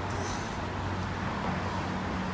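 Steady city street traffic noise: a constant, even hum of passing cars.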